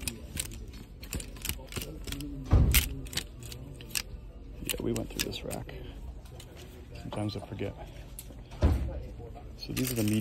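Plastic clothes hangers clicking and sliding along a metal clothing rail as garments are flipped through, a quick irregular run of clicks. Two heavier thumps come about two and a half seconds in and again near the end.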